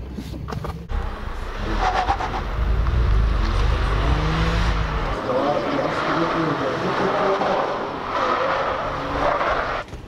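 A small hatchback being driven hard through a slalom cone course: the engine runs under load and the tyres squeal in the corners. It is loud from about a second in.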